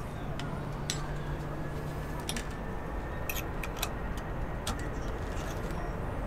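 A few short, sharp metallic clicks of small sailing-winch parts being handled and fitted, spaced irregularly over a steady low background hum.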